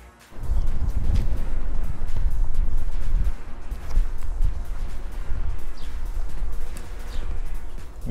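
Wind buffeting an outdoor microphone: a heavy, irregular low rumble that starts suddenly just after the beginning, with faint bird chirps.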